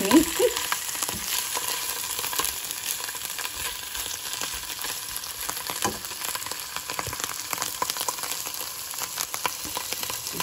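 Hot oil sizzling with a steady crackle in a non-stick frying pan holding cumin seeds, ginger paste and chunks of boiled potato.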